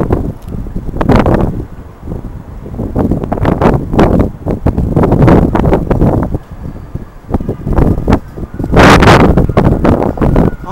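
Wind buffeting the camcorder microphone in loud, irregular gusts, with a low rumble underneath.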